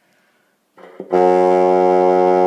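Bassoon playing low F sharp, one steady held note in a slow chromatic scale, starting about a second in after a short soft onset.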